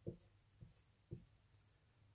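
Whiteboard marker drawing short hatching strokes on a whiteboard to shade in a circle: three faint strokes, about half a second apart.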